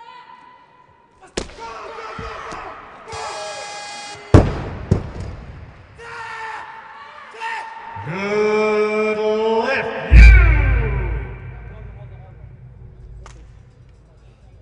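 Sharp knocks on a weightlifting platform, then a loud drawn-out shout, and about ten seconds in a loaded barbell dropped onto the platform with a loud deep thud and a low rumble that dies away over about two seconds.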